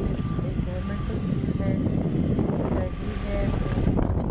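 Steady low rumble of a vehicle driving along a rough hill road, with short, faint voice-like snatches heard over it.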